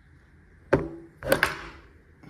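Arbor press forcing the press-fit stock needle bearing out of an LS rocker arm: a sharp metallic pop with a brief ring about three quarters of a second in, then a quick cluster of louder snaps just past the middle as the bearing breaks loose.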